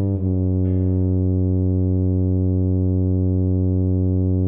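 Tuba part played back from the sheet music: a quick low note changes to a long held low note about a quarter second in, sustained steadily and tied across the bar line.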